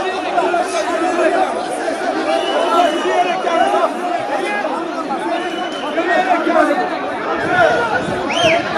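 A large street crowd of many voices shouting and talking over one another in a steady din, with a few short whistles.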